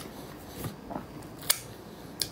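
A person chewing food, with a few soft mouth clicks and one sharper click about three-quarters of the way through.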